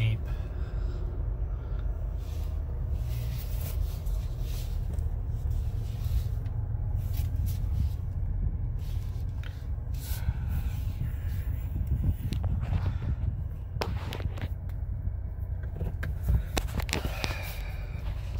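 Jeep Gladiator's gasoline V6 idling, heard from inside the cab as a steady low rumble, with a few sharp knocks or clicks in the second half.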